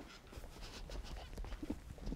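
Faint, irregular footsteps and shuffling of several people walking across a stage floor.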